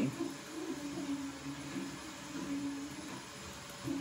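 A vacuum cleaner running elsewhere in the house, a steady low hum.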